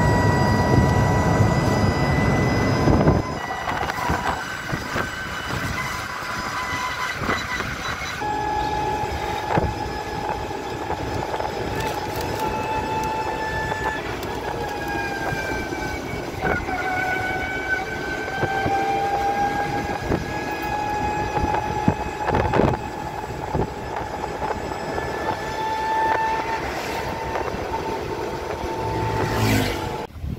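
Renault Twizy's electric drive whining as the small car is driven, the whine drifting up and down in pitch with speed over road and wind noise. A heavy low rumble dominates the first three seconds.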